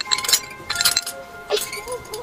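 Small metallic clinks and ticks in three quick clusters as fingers work a part onto the hub of a small spoked metal wheel, over held notes of a music score.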